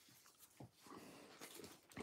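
Near silence, with a faint rustle of a large sheet of origami paper being handled and pinched into folds from about a second in.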